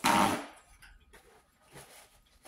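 A paper towel is shaken open with a short, loud rustling snap lasting about a third of a second, followed by faint rustling as it is handled.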